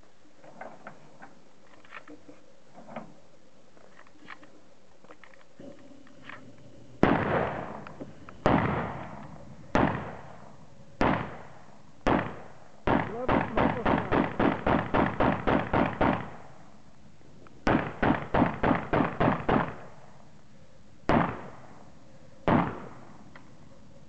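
AK-pattern rifle firing: five single shots about a second apart, then a fast string of about a dozen shots at about four a second, a short pause, a second string of about eight, and two last single shots, each shot trailing off in echo. Faint clicks of handling the rifle come before the first shot, about seven seconds in.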